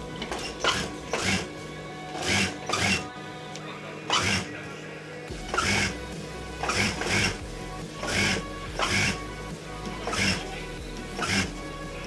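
Background music with steady held tones and a beat of short strokes about once or twice a second.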